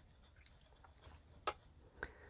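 Near silence with a single short click about one and a half seconds in.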